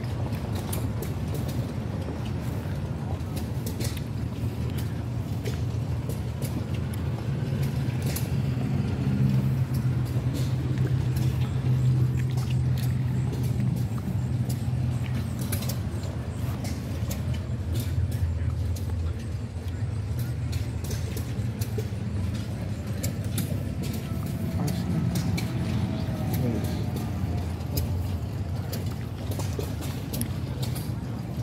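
A steady low engine hum with many irregular clicks over it, and faint voices in the background.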